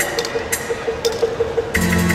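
Band music starting up on stage: a fast, even ticking beat, joined near the end by a bass line and chords as the song comes in.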